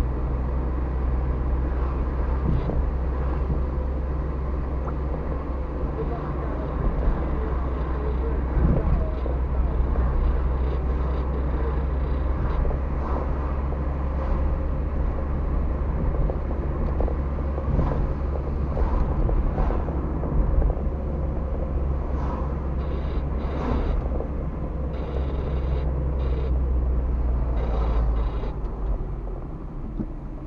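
A car driving, heard from inside the cabin: a steady low drone of engine and tyre noise with small rattles. The drone eases near the end as the car slows for an intersection.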